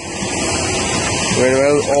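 Steady running noise of a concrete pump truck's engine, getting louder over the first second, with a man talking over it from about halfway through.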